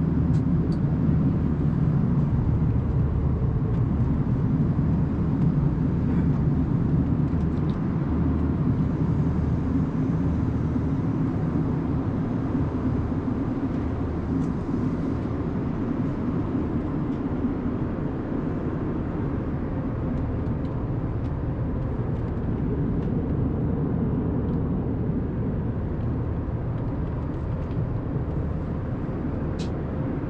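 Airliner passenger-cabin noise: a steady low rumble of engines and air flow heard from inside the cabin, easing very slightly in loudness, with a few faint clicks.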